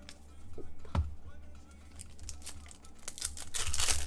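Foil trading-card pack wrapper crinkling and tearing as the pack is opened, loudest in the last second. There is a single sharp tap about a second in.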